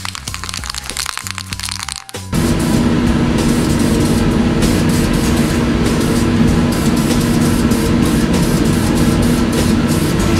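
Aerosol spray can of wrinkle paint shaken hard, its mixing ball rattling in rapid clicks, for about two seconds over background music. Then a loud, steady rushing noise with a low hum starts suddenly and carries on.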